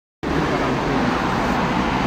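Steady background rumble and hiss with a low hum underneath, starting just after the beginning and holding level throughout.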